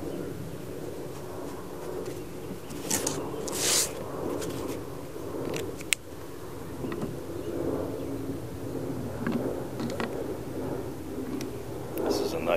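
Steady low background hum outdoors. About three to four seconds in come two brief rustles as a sheet of watercolor paper is slid and turned on the table, and a single sharp click near the middle.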